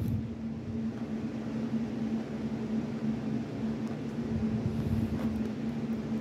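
A steady low hum with a faint hiss under it, swelling slightly about five seconds in.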